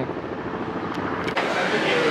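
Steady noise of street traffic, cars passing on the road by a parking lot, with one sharp click about a second and a half in.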